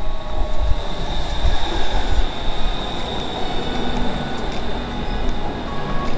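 Bangkok BTS Skytrain electric train pulling into an elevated station and running alongside the platform, with a steady high-pitched whine that fades near the end.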